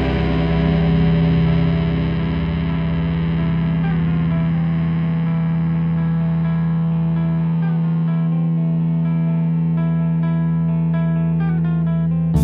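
Distorted electric guitar music through effects, with no drums: a low note is held throughout while the bright wash above it fades over the first couple of seconds. From a few seconds in, picked notes step downward in the upper range, coming quicker toward the end.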